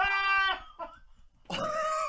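A man laughing hard in two long, high-pitched, bleating cries, with a short near-silent gap just before the second.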